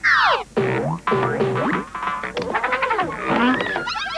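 Commercial music with cartoon-style sound effects: a quick falling glide at the start, then a run of springy boings and swooping pitch bends.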